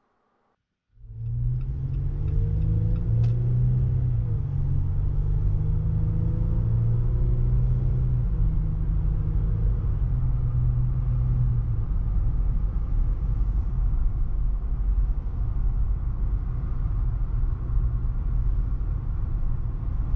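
A 2018 Jeep Wrangler JL Rubicon heard from inside the cabin while being driven, starting about a second in. Its 3.6-litre Pentastar V6 hums and shifts a little in pitch over the first several seconds, over a steady low road and tire rumble. After about twelve seconds the engine note sinks into the even rumble.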